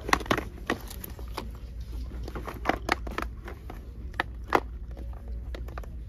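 Irregular light clacks and taps of small cardboard lipstick boxes being handled against a clear acrylic display shelf, about a dozen knocks, over a steady low hum.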